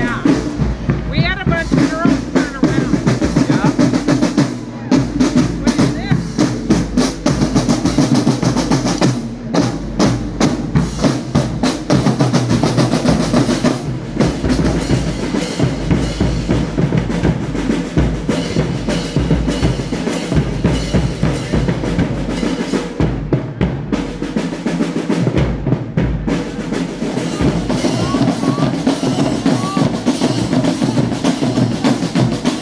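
Marching drum line playing snare drums and bass drums in a fast, continuous cadence with rolls.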